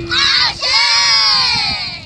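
A group of children shouting together in high voices: a short shout, then a longer shout that falls in pitch.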